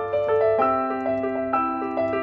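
Piano played on a digital keyboard: a minor-key theme in right-hand thirds, a new note struck about every quarter second, over a low note that comes in about a third of the way through and holds. The harmony moves from D minor toward C, the first steps of the Andalusian cadence.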